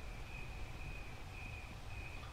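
A cricket chirping faintly in an even, repeating pulse, over a low steady rumble.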